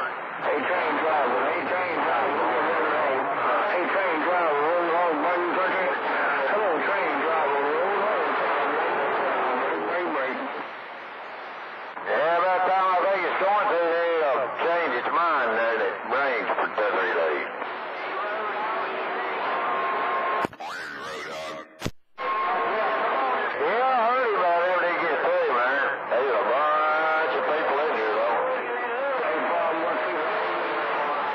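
Voices of distant CB operators received as skip on channel 28 through an AM CB radio's speaker, thin and noisy, with no clear words. About two-thirds of the way in there is a brief burst of static, then a sudden momentary cut-out before the voices return.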